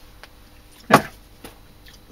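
A man's short spoken 'yeah' about a second in, with a few faint clicks of things being handled on a workbench.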